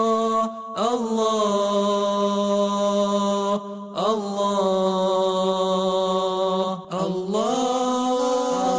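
Vocal chant (a sung nasheed-style line) with a voice holding long steady notes. Each note begins with a short upward slide, and the singing breaks briefly about a second in, near the middle and again near the end.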